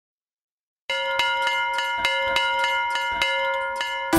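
A bell-like ringing tone struck rapidly, about three times a second, starting about a second in after silence and held steady.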